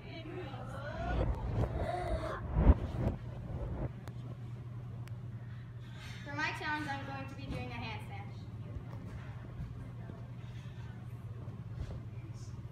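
Girls' voices speaking over a steady low hum, with one sharp thump about two and a half seconds in.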